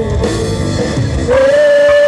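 Live rock-style band music: singers with electric guitar and drum kit, a long held sung note coming in about one and a half seconds in.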